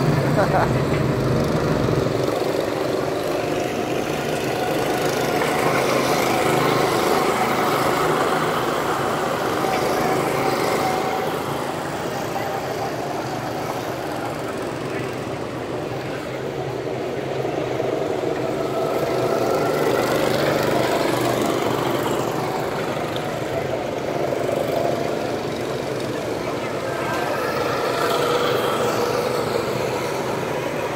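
Go-kart engines running on the track, the engine note swelling and fading several times as karts come past and pull away.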